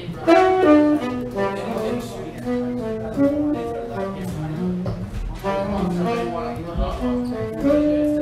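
A jazz horn playing one melody line of quick single notes that step up and down.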